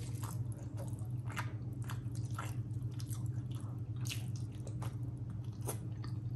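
Close-miked eating sounds of rice and curry eaten by hand: wet squishes as fingers mix and scoop the rice in gravy, and smacking and chewing as a handful goes into the mouth. The sounds come as irregular short, sharp smacks over a steady low hum.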